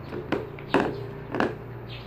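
Three short taps and clicks, about half a second apart, from slime being stirred with a thin stick in a plastic bowl and worked by hand.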